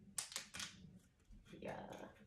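Metal screw cap twisted off a wine bottle: a quick run of sharp clicks about a quarter of a second in as the cap's seal breaks.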